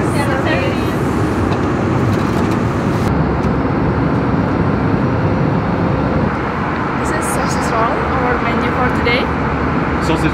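Steady cabin noise of an Airbus A320 airliner in cruise, with faint voices now and then.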